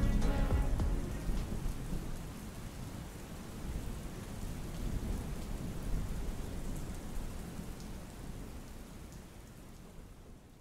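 Steady rain with low rolling thunder; the rumble swells in the middle and fades away near the end. The last of a song dies out in the first second.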